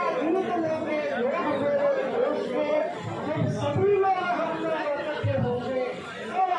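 Several people talking at once: overlapping chatter of a small crowd, with no one voice standing out.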